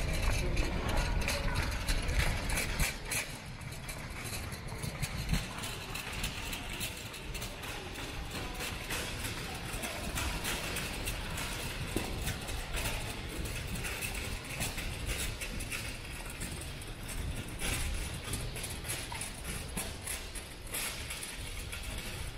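Footsteps clicking on a hard tiled floor while walking, over a low rumble of handling noise.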